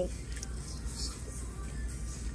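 Faint background music over a steady low hum.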